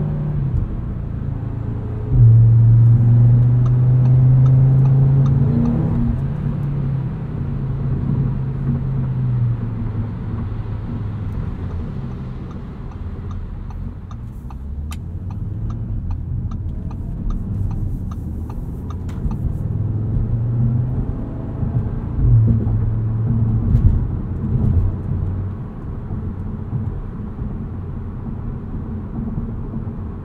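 The 2022 Audi RS 3's turbocharged 2.5-litre inline five-cylinder and sport exhaust, droning as heard from inside the cabin. It gets suddenly louder about two seconds in, eases off over the next several seconds, and swells again twice in the last third.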